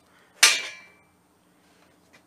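A single sharp metallic clank about half a second in, with a brief ringing tail as it fades: a hacksaw being tossed aside.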